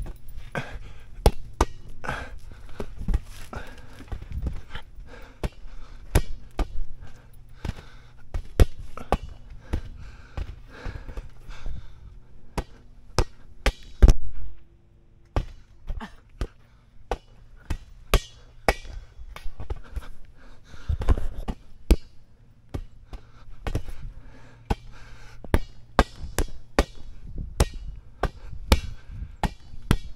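Irregular thumps and slaps from bouncing on a trampoline mat and hitting a large inflatable rubber ball back and forth. The loudest thump comes about fourteen seconds in, as the ball strikes right against the camera.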